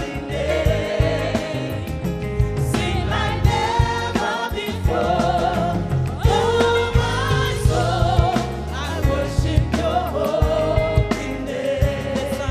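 Gospel worship song: a woman singing lead into a microphone with a congregation singing along, over a band with a strong bass line and a steady beat.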